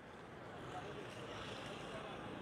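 Faint street traffic noise, a steady haze that grows a little louder over the two seconds.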